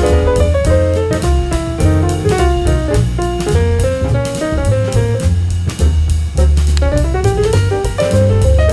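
Background instrumental music with a steady drum beat, a bass line and a melody of quick stepping notes.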